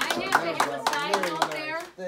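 A small group of people clapping in a room, with voices over the applause. The clapping dies away just before the end.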